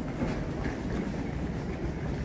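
Airport check-in hall ambience: a steady low rumble with faint scattered clicks and clacks, of the kind rolling suitcase wheels and footsteps make on a tiled floor.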